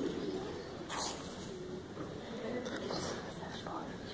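Low murmur of audience voices chatting while waiting, with a sharp click about a second in.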